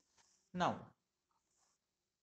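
Speech only: a man says the single word "now" about half a second in, with quiet room tone around it.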